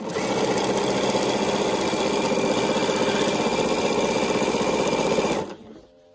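Bernina sewing machine running steadily as it stitches a binding strip onto the edge of a quilt, then stopping near the end.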